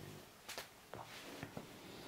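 A few faint, short clicks in a quiet room, four of them spread over about a second.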